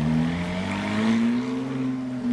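A BMW Z3 roadster's engine accelerating as it comes on, its note rising steadily in pitch for about a second and a half, then levelling off.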